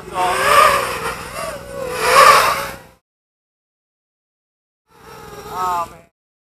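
FPV racing quadcopter's motors and propellers whining, the pitch wavering up and down with the throttle for about three seconds, then cutting off abruptly. A shorter burst of the same whine comes in about a second before the end.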